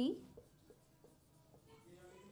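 Marker pen writing on a whiteboard: faint, short strokes as a word is written out.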